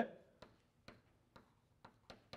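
Chalk clicking against a blackboard as an equation is written: faint, sharp taps about two a second.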